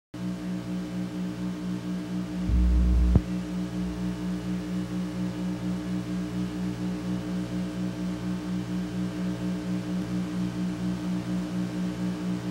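A steady low buzzing hum that pulses about four times a second. About two and a half seconds in, a louder low rumble runs for under a second and ends in a sharp click.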